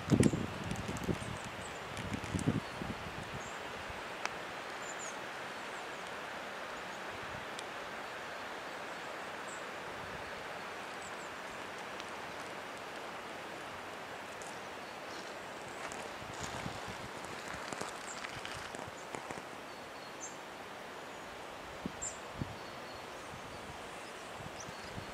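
Steady outdoor noise of wind rushing through trees, with short high bird chirps now and then. A few low wind buffets hit the microphone in the first few seconds.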